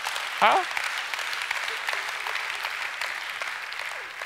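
A large seated audience applauding, many hands clapping in a dense steady patter that eases slightly toward the end. A single short voice rises briefly about half a second in.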